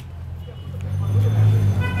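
Low steady rumble of traffic that swells in the middle, with faint talking under it; a steady high tone, like a vehicle horn, starts near the end.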